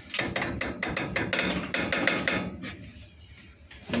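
A rapid run of light, hard clicks and rattles, about seven a second for roughly two and a half seconds, then dying down to quieter handling noise: small hard parts being handled.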